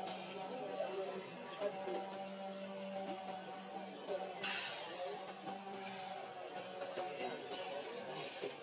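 Background music with sustained, held notes, plus a brief rustling noise about halfway through.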